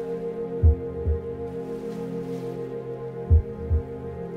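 Meditation music: a sustained singing-bowl tone with ringing overtones, gently pulsing, over a low double thump like a heartbeat that comes twice, about a second in and near the end.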